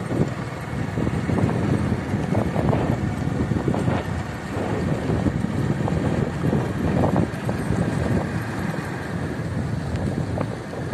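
A vehicle driving along an unpaved dirt road, with a steady rumble and wind buffeting the microphone in uneven gusts.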